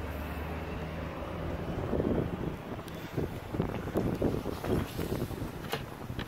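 Wind buffeting the camera's microphone in uneven gusts over a low steady rumble.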